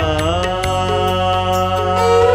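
Sikh shabad kirtan with voice, harmonium and tabla: a sung vowel slides down at the start, then the harmonium holds steady notes while the tabla keeps striking a beat underneath.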